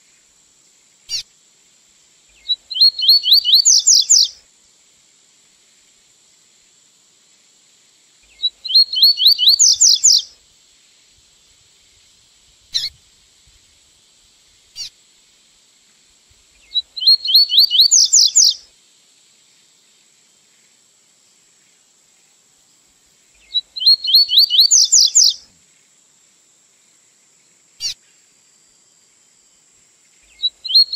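Double-collared seedeater (coleirinho) singing the 'tui-tui zero zero' song type, a recorded song used for teaching young birds. There are four high phrases about six or seven seconds apart, each a fast run of notes climbing in pitch and lasting under two seconds, with single short chirps between them.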